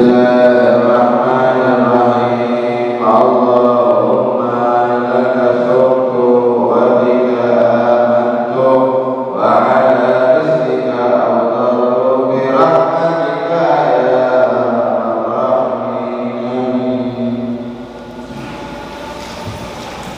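A man's voice chanting a supplication (du'a) in long, melodic held phrases, a new phrase beginning every few seconds; it grows quieter near the end.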